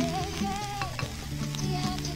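Tea pouring from a china teapot into a teacup, over quiet background music.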